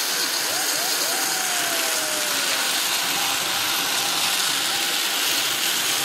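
Steady rushing noise of a sky cycle rolling along its overhead cable, with wind on the microphone. A faint thin tone glides slowly down about a second in.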